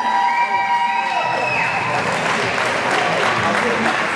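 Audience applauding, swelling in after about a second and a half. The applause is preceded by a few steady held tones.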